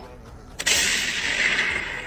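A sudden blast sound effect about half a second in, its noise fading away over about a second and a half.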